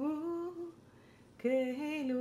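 A woman singing a slow melody alone, with no accompaniment. One phrase ends a little past half a second in, and after a short pause a new phrase begins near the end.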